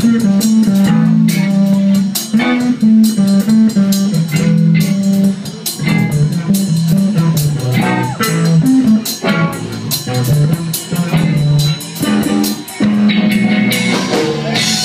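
Live rock band playing an instrumental passage: a prominent, moving electric bass line over drum kit and electric guitar, loud throughout.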